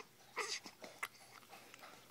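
A newborn baby gives one short whimpering squeak about half a second in, followed by a couple of soft clicks from sucking on a pacifier.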